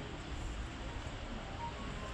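Steady outdoor background noise with a low rumble and no distinct events.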